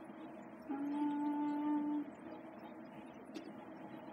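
A woman's voice holding one long, level 'uhhh' hesitation for about a second, then quiet room tone with a faint click.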